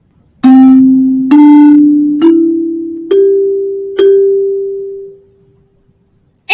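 A five-note melody, do-re-mi-so-so, played on a pitched instrument as an ear-training example. The notes step upward, the last two repeat on the same pitch, and each note rings and fades before the next one is struck.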